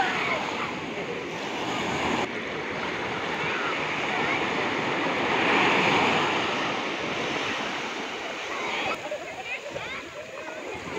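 Small sea waves breaking and washing over the shallows around people's legs: a steady rush of surf that swells to its loudest about halfway through, then eases.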